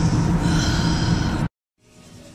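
Steady rumble of car-cabin noise with a short breathy sound, like a sigh, about half a second in. It cuts off abruptly after about a second and a half, leaving faint room tone.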